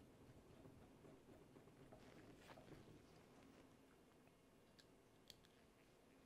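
Near silence with a few faint clicks and small handling noises from hands working plastic parts at an RC car's rear bumper, one sharper click about five seconds in.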